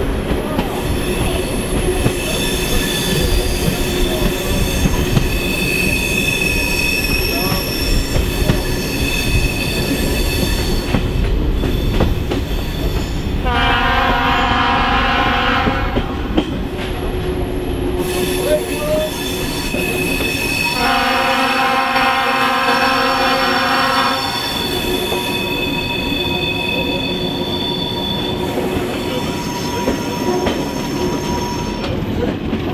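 A Czech class 749/751 diesel-hauled passenger train running along a branch line, its wheels squealing in thin, steady high tones over the rumble of the coaches. The locomotive's horn sounds twice, about halfway through and again some seven seconds later, each blast about three seconds long.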